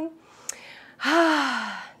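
A woman's sigh: a faint breath in, then about a second in a long voiced sigh out that falls in pitch.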